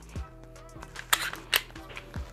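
A few sharp metallic clicks from a Glock 19 pistol being handled and its action worked while it is checked clear, the loudest two a little past the middle. Faint background music plays underneath.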